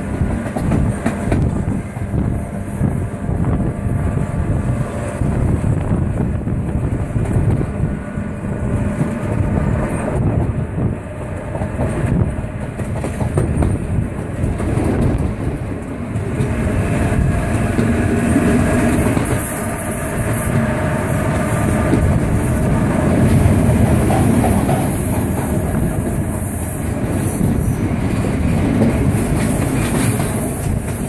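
Passenger train carriages running on the rails, heard from an open carriage window: a steady rumble with the clickety-clack of wheels over rail joints.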